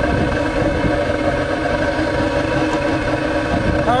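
Steady rumbling roar of hot burner exhaust flowing out of a long metal pipe, with a constant droning hum of several steady tones.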